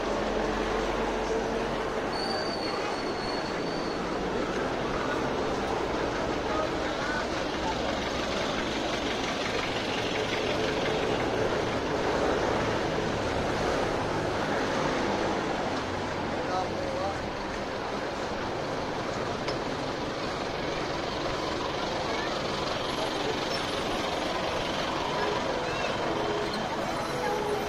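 Busy street ambience: vehicle engines and traffic running steadily, with people's voices in the background.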